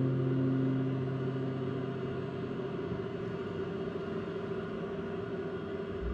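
Final chord on an acoustic guitar ringing out and fading away over about three seconds, leaving a steady low hum of room noise.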